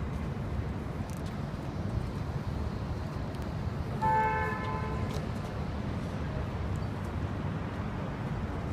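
A car horn sounds once, a steady two-tone toot about a second long, midway through, over a constant low rumble of street traffic.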